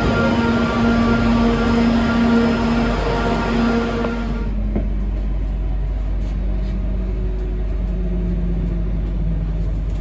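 About four seconds of dense platform noise with held tones, then an abrupt change to the inside of a Class 323 electric multiple unit. There is a steady low rumble, and a motor whine that steps up in pitch as the train gathers speed.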